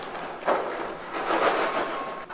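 Popped microwave popcorn poured from its paper bag into a stainless steel bowl: the paper bag crinkles and the popcorn falls onto the metal.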